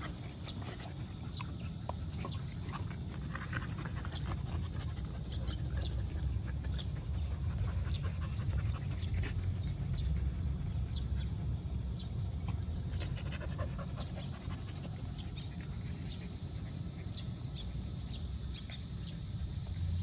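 Jindo dogs panting as an adult dog and a puppy sniff each other, with many light, scattered clicks throughout.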